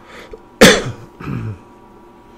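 A person clearing their throat: one sharp, loud cough-like burst about half a second in, followed by a quieter, lower voiced rasp.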